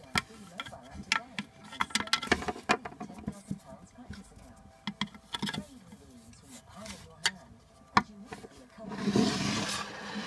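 Small plastic toy figures and pieces being handled and set down, making a string of sharp clicks and knocks, with faint voice sounds among them. A brief rushing hiss comes about nine seconds in.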